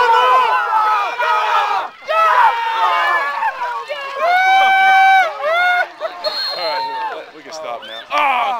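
Spectators yelling and screaming encouragement in high, overlapping voices, with one long held yell about four seconds in.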